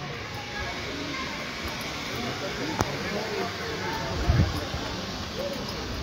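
Faint background voices talking over a steady outdoor hiss, with a sharp click a little before the three-second mark and a dull low thump about four seconds in.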